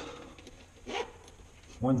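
A spoken word near the end, with soft handling of leather shoe-upper and lining pieces on the workbench in between and a brief short sound about halfway.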